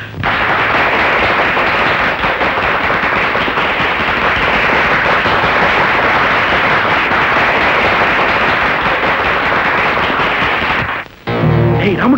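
Loud, dense applause from a large audience, a steady crackle of many hands clapping that stops abruptly about eleven seconds in.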